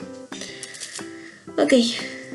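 Background music of plucked strings playing a light, stepping tune, with a spoken "ok" near the end.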